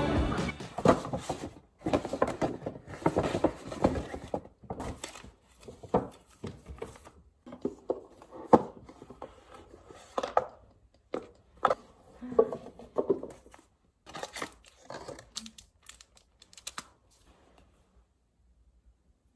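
A stiff black cardboard sunglasses box and its paper inserts being opened and handled by hand: irregular rustling and crinkling with sharp little clicks and knocks of the lid and flaps.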